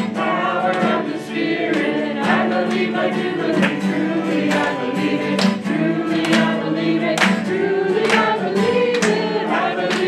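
Two acoustic guitars strummed in a steady rhythm accompanying voices singing a worship song.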